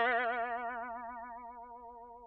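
Cartoon 'boing' sound effect: a single twanging tone that wobbles up and down in pitch and fades away over about two seconds.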